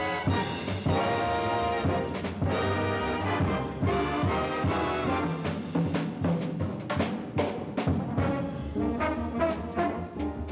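Big band jazz played live: trumpet, trombone and saxophone sections in ensemble over upright bass and drums, with sharp drum and cymbal hits punctuating the horn lines.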